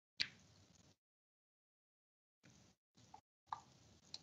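Near silence broken by sharp clicks from a computer mouse: one shortly after the start, then a couple of softer ones near the end, with faint hiss between them. The clicks come as the presenter tries to get slides to show on a shared screen.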